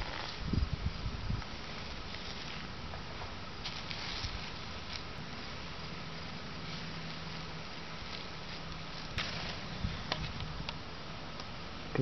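Plastic wrap being handled and pulled back off a small ground solar still, with a few soft low thumps in the first second or so over a quiet outdoor background. A faint low hum comes in for a few seconds midway.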